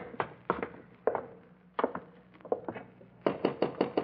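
Radio-drama sound-effect footsteps of several people walking: uneven clicking steps, then a quicker, even run of steps near the end.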